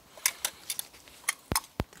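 Metal clicks and knocks from the aluminium tunnel of a Longworth small-mammal trap being separated from its nest box: a run of light taps, with two duller knocks in the second half.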